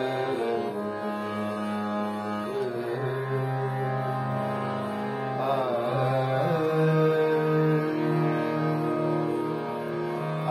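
Harmonium played with held reed chords and a melody line, the notes changing every few seconds.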